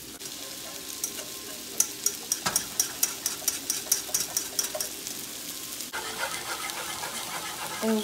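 Wire whisk beating gravy in a metal saucepan, its wires clicking against the pan about five times a second for a few seconds. Under it is the steady sizzle of salmon fillets and shrimp pan-searing in a frying pan.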